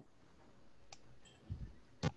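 Near silence with a few faint, sharp clicks, one about a second in and one at the very end, and a soft low bump in between.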